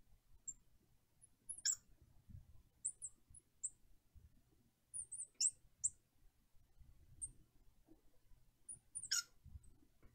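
Felt-tip marker squeaking on a glass lightboard as it writes: faint, short high-pitched squeaks scattered throughout, with longer squeals about a second and a half in, midway and near the end.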